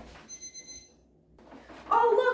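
Electronic timer sounding a high, steady beep for just under a second as it is set.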